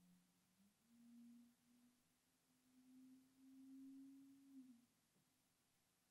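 Near silence, with a very faint run of steady low tones that step upward in pitch, each held for a moment, stopping about five seconds in.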